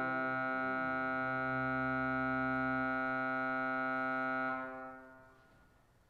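Church pipe organ holding a steady chord, released about four and a half seconds in, with the reverberation dying away over about a second.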